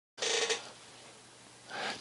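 Quiet room tone, dead silent at the very start. About a quarter second in comes a short noise, and a small rise just before the end leads into speech.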